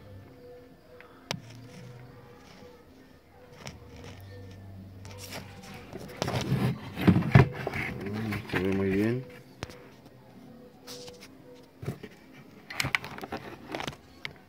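Indistinct background voices with some music, loudest for a few seconds in the middle, and a few sharp clicks and scrapes from handling close to the circuit board.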